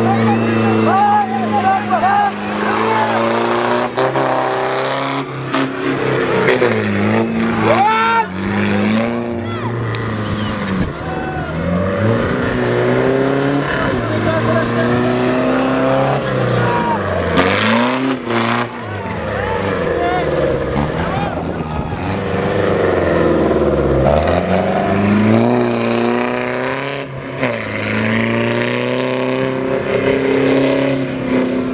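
Off-road 4x4's engine revving hard, its pitch falling and climbing again several times as the vehicle churns through mud and dirt. Crowd voices and shouts are mixed in.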